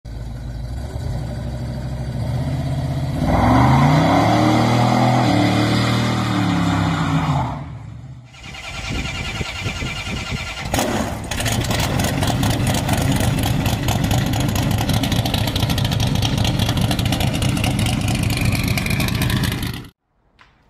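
Car engine revving: the pitch climbs and falls back about three seconds in, then a dip, then a steady, rhythmic running sound that cuts off abruptly at the end.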